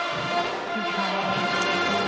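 Brass band music with long held notes and no speech over it.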